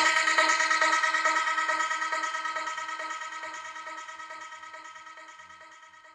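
Electronic music's final held chord with a pulsing rhythm, fading out steadily.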